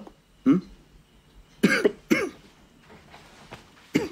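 A man coughing twice in quick succession, a short chesty cough from someone who holds his chest.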